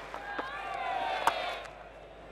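A cricket bat striking the ball once with a sharp crack a little past halfway, a reverse slap played against spin. Beneath it runs the murmur of a stadium crowd, with a voice calling out.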